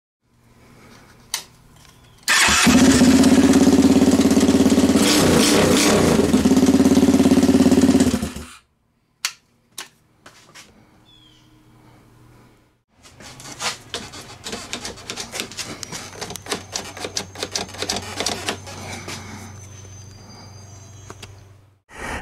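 Lifan 163FML 200cc single-cylinder four-stroke engine in a minibike, running steadily for about six seconds and then stopping abruptly. After a few clicks it runs again, quieter, with a fast busy ticking over the engine note.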